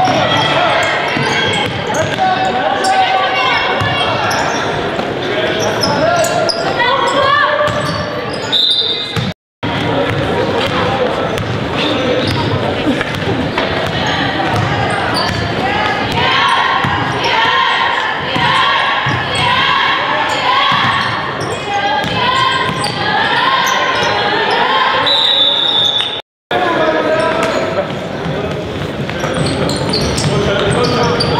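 Basketball game in a gymnasium: the ball bouncing on the hardwood court amid players' and spectators' voices. A short referee's whistle blast sounds twice, about a third of the way in and again late on, each followed by a moment of silence.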